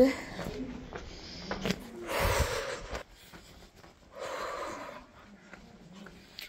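Two heavy breaths close to the microphone, about two and four seconds in, each lasting under a second.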